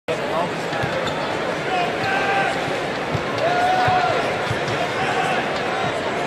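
Arena crowd hubbub with voices calling out over it, and a basketball bounced a handful of times on the hardwood court as a free-throw shooter dribbles before the shot.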